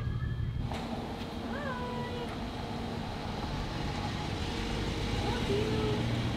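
Domestic cat meowing: a short rising-then-falling meow about a second and a half in, and a shorter one near the end, over a steady low street rumble.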